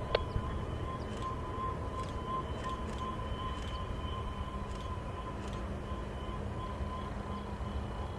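Distant rumble of the Union Pacific work train's five diesel locomotives working to hold a heavy train on the steep grade, with a steady, slightly pulsing high tone over it and a sharp click right at the start.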